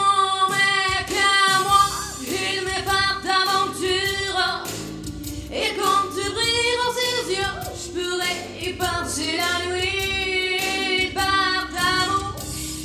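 A young female solo singer singing into a handheld microphone over musical accompaniment, holding long notes with a wide vibrato.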